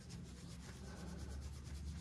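Faint, steady rubbing: a hand stroking a pig's bristly coat close to the microphone.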